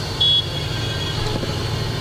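A low, steady rumble like a running engine, with a short high beep just after the start that fades out over about a second.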